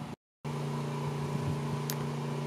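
A moment of dead silence at an edit cut, then a steady mechanical hum: a low drone with several fainter, higher steady tones above it.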